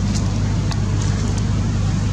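Steady low drone of a running motor vehicle engine, with a few faint ticks on top.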